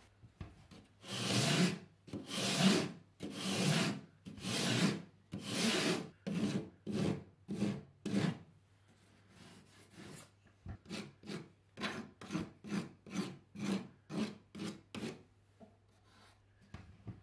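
Surform rasp shaving the cut edge of plasterboard along an arch, a run of scraping strokes. They start as long strokes about once a second, then turn shorter and quicker, about two to three a second, after a short pause.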